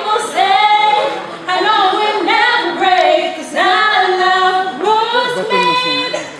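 Young female voices singing a cappella, unaccompanied, in several long held and sliding phrases with short breaks between them.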